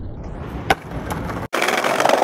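Skateboard sounds: one sharp clack of the board about two-thirds of a second in, then, after an abrupt cut, polyurethane wheels rolling loudly over brick paving.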